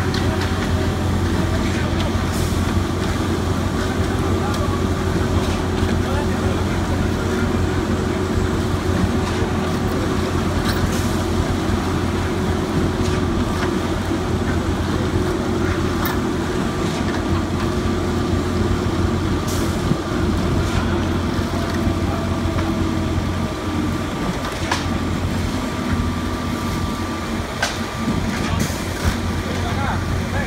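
Concrete pump truck's diesel engine running steadily under load as concrete is pumped through the placement hose, a loud continuous low drone, with a few scattered knocks.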